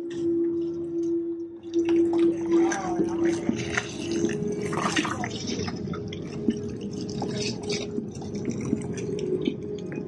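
Haunted-house attraction soundtrack. A steady low drone runs for about the first two seconds, then gives way to a dense mix of sound effects with clicks and drips and a loud, sharp burst of noise about five seconds in.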